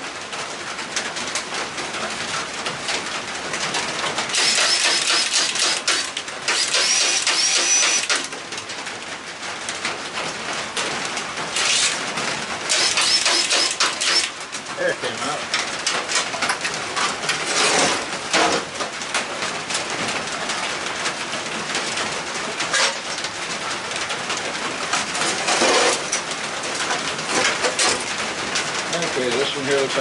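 A handheld power tool whirring with a high whine in two longer bursts and a few short ones, as it runs off the nuts holding an old push mower's engine to its tin deck.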